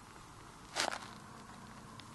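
A Chinese ink brush stroking Xuan rice paper: one short, scratchy swish about three-quarters of a second in.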